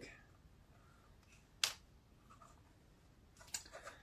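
Quiet handling of a 3D-printed plastic spotlight housing and a thin metal liner: one sharp click about a second and a half in, then a few light ticks near the end.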